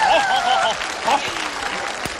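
Live studio audience applauding and laughing, with voices rising over it at first; the applause eases off after about a second.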